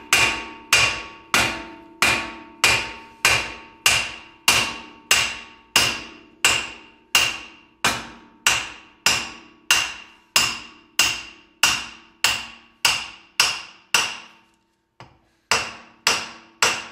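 A hammer repeatedly striking the bare end of an old front-wheel-drive CV axle shaft in the wheel hub to knock it loose, steel on steel with a ringing clang, about one and a half blows a second. The blows pause briefly near the end and then resume. With no nut threaded on to protect it, the shaft end is being mushroomed.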